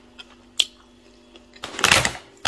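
A plastic bag of parboiled rice rustling and crinkling as it is picked up and handled near the end, after a single sharp click about halfway through, over a faint steady hum.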